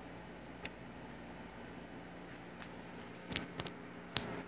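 Small plastic clicks of HO-scale model train cars being handled and coupled on the track: a single click well under a second in, and a quick cluster of clicks near the end. A steady low hum runs underneath.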